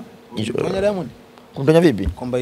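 A man's voice in conversation, without clear words: a drawn-out vocal sound lasting most of a second, then a short one near the end.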